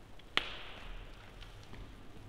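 A single sharp knock about a third of a second in, with a brief echo of a large stone church after it, followed by a few faint ticks.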